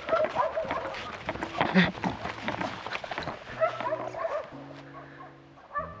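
Dogs barking repeatedly, a string of short barks, with background music of long held notes underneath.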